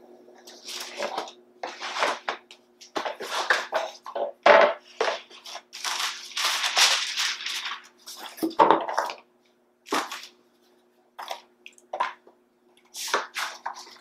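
Cardboard packaging rustling and scraping as flat-pack particleboard shelf panels are slid out of their box and laid on a tile floor, with a few sharp knocks as panels are set down, the loudest about four and a half seconds in and again near nine seconds. The handling thins to scattered short scrapes in the last few seconds, over a faint steady hum.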